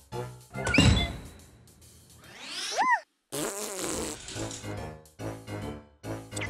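Cartoon sound effects over children's background music: a loud low blast about a second in, then a rising whistle-like glide that cuts off abruptly near the middle, followed by a brief burst of noise as the music carries on.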